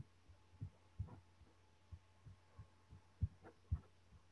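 Faint, irregular soft knocks and taps, about nine of them, over a steady low electrical hum picked up by an open microphone.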